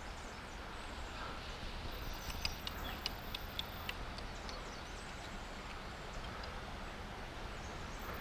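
Steady outdoor river ambience: flowing water with a low wind rumble on the microphone. Between about two and four seconds in, a short run of faint, irregular sharp clicks.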